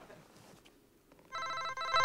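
A telephone ringing in short repeated bursts, starting about a second and a half in after near silence.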